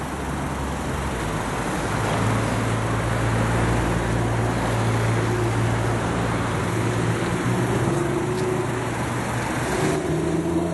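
Steady road traffic noise with a low hum underneath, growing louder over the first two seconds and then holding.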